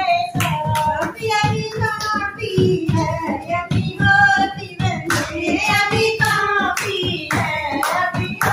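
Female voices singing to a dholak, a hand-played barrel drum, beaten in a quick steady rhythm, with hand clapping.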